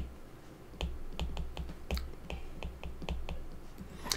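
Stylus tip tapping and clicking on a tablet's glass screen while handwriting: faint, irregular short clicks, several a second, over a low hum.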